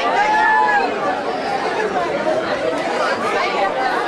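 Club audience chattering, many voices overlapping, with one long drawn-out call in the first second.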